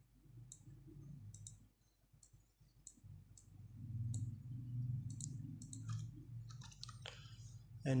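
Computer mouse clicks, a dozen or so sharp separate clicks, with a few keyboard keystrokes near the end. From about three seconds in they sit over a low, muffled murmur.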